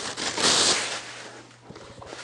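Clear plastic wrap crinkling as it is pulled off a pair of binoculars. It is loudest in the first second and then fades away.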